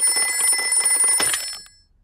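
Cartoon rotary desk telephone's bell ringing: one ring lasting about a second and a half, then dying away.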